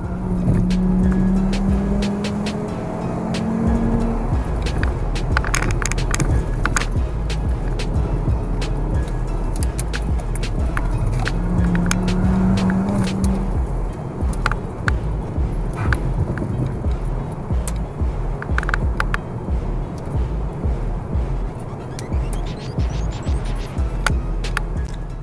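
Engine and road noise of a VW Golf Mk6's 2.5-litre five-cylinder, heard from inside the cabin as it is driven hard through canyon corners, with background music mixed over it.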